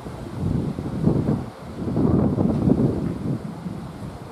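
Wind buffeting the microphone in gusts: a low rushing noise that swells about a second in and again, more strongly, in the middle.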